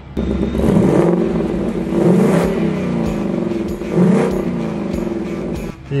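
Ford Mustang Mach 1's 5.0-litre V8 revved from idle about three times while parked, heard from inside the cabin, with the exhaust in its quiet ('Silencioso') mode.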